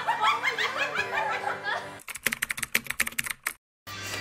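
People laughing loudly for about two seconds, then a quick, irregular run of sharp clicks for about a second and a half. The clicks stop abruptly into dead silence.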